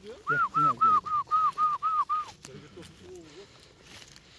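A person whistling a quick run of about eight short, rise-and-fall notes, about four a second, as a call to a dog.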